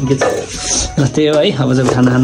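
Metal spoon and dishes clattering as rice is scooped from a pot, with a voice over it.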